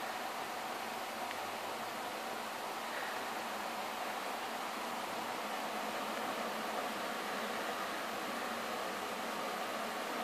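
Steady, even hiss of background noise with no distinct sounds in it.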